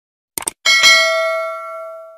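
A quick double mouse click, then a bright bell ding just after half a second in that rings on and fades away. This is the sound effect of a subscribe-button and notification-bell animation.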